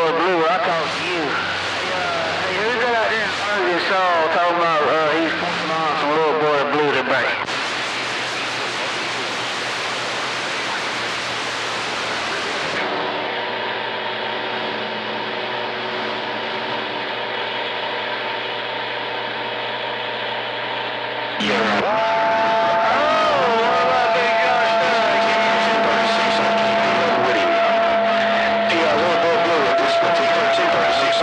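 CB radio receiving skip on channel 28. Unintelligible, warbling voices come through for the first seven seconds, then plain static hiss. After that come steady whistling heterodyne tones, which become a loud, steady two-note whistle over the hiss about twenty seconds in.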